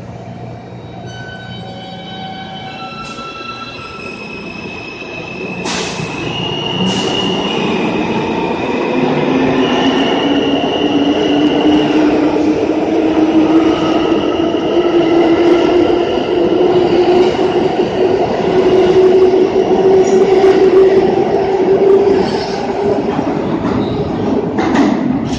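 R160A New York City subway train pulling out of the station. About six seconds in there is a knock as the doors close. Then a motor whine rises slowly in pitch as the train gathers speed past the platform, over rumble and some high wheel squeal, getting louder until the last car goes by near the end.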